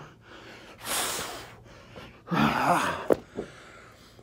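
A man breathing hard through push-ups: a heavy, noisy exhale about a second in, then a strained, voiced gasp about halfway through, followed by a brief click.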